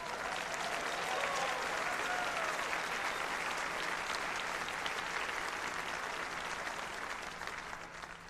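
Large audience applauding steadily, with a voice or two calling out in the first few seconds; the clapping dies away near the end.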